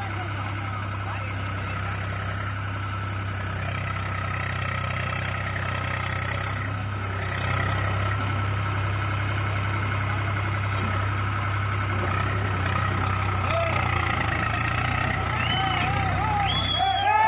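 Tractor engine running steadily at a low, even hum in a river crossing, getting a little louder about halfway through.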